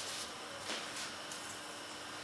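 Mostly quiet room tone with faint soft handling sounds of hands shaping a round of bread dough on a work surface, one slightly stronger touch a little under a second in.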